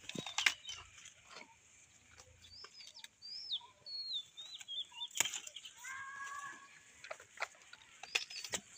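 Cauliflower leaves torn, snapped and rustled by hand, as sharp cracks and crackles. Small birds chirp in the background, and a short pitched call comes about six seconds in.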